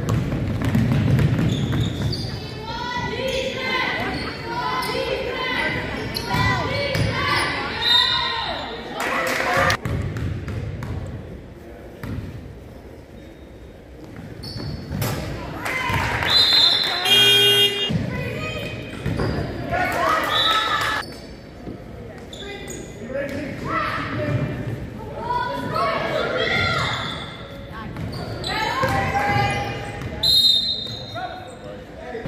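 A basketball dribbling on a hardwood gym floor among the indistinct shouts of players and spectators, all echoing in a large hall. A little past halfway comes a short high whistle followed by a brief buzz.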